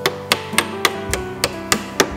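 A small hammer tapping a wooden canvas key (wedge) into the corner of a canvas stretcher frame to tighten the canvas: a quick, even run of about eight knocks, roughly three a second, over acoustic guitar music.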